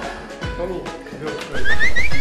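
Background music with faint chatter, then about one and a half seconds in, a loud comic sound effect cuts in: a quick run of three rising squeals that turns into a long high whistle-like glide.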